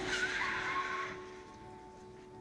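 Car tyres screeching in a skid for about a second, the squeal dropping in pitch and fading out, over faint background music.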